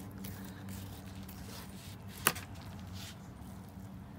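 Rapala fillet knife sliding through a coho salmon along its backbone, faint, with one sharp click a little over two seconds in. A steady low hum runs underneath.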